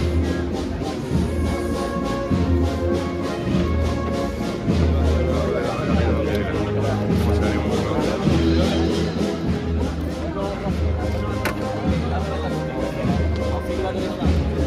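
Spanish banda de música playing a processional march: sustained brass and wind chords over a steady low beat of drums or bass, about one pulse a second.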